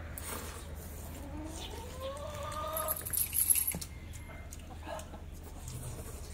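A chicken calls once, a rising cry lasting about a second and a half. Noodles are slurped from bowls, loudest about three and a half seconds in.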